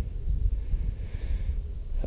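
A person breathing out close to the microphone, a soft hiss about halfway through, over a low rumble.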